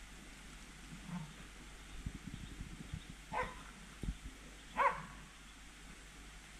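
Faint hunting dog barking: two short barks about three and a half and five seconds in, with a fainter one about a second in. Low thumps of wind or handling on the microphone run underneath.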